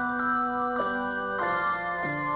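A handbell choir ringing a piece: chords of handbells struck a little over half a second apart, each chord ringing on until the next.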